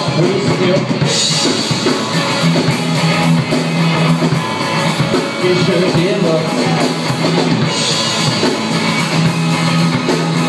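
Live rock band playing: guitars over a drum kit, with the cymbals brightening about a second in and again near the end.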